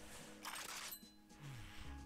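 Slot game's background music with steady held tones, a short hiss of noise about half a second in and a brief falling tone a little later.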